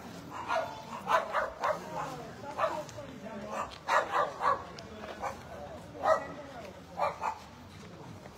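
A dog barking repeatedly: about a dozen short barks, several coming in quick runs of two to four.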